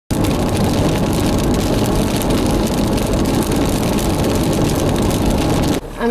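Loud, steady wind and road noise inside a car moving at highway speed through a storm, with rain spattering on the windshield as many small irregular ticks. The noise drops off abruptly just before the end.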